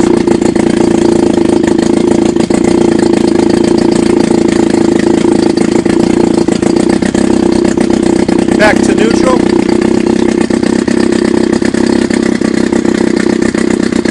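Chrysler Sailor 180 7.5 hp two-stroke outboard motor running steadily with an even, unchanging note, its propeller in a test tank of water.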